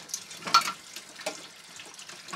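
Kitchen tap running into a sink while hands are washed under it, with a short knock about half a second in.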